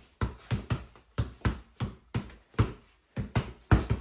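Two basketballs dribbled hard on a bare concrete floor: a quick, uneven run of bounces, about three a second, with a brief pause about three seconds in.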